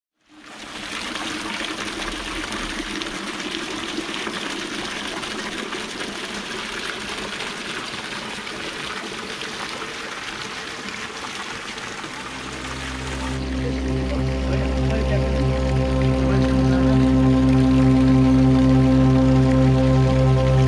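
Water pouring from a spout onto stone, a steady splashing. About twelve seconds in, ambient music with long held tones fades in and grows until it is the louder sound.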